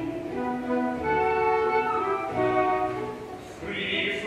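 Orchestra playing an interlude of held chords, led by bowed strings, with the chord changing about once a second and a brief softening just before the end.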